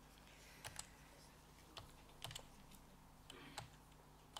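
A handful of faint, scattered laptop key clicks over quiet room tone, made while the presentation slide is being advanced.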